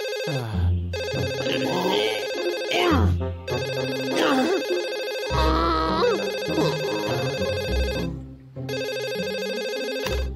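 A mobile phone ringtone rings in long bursts with short breaks, about four times, with a sleepy voice groaning and mumbling underneath.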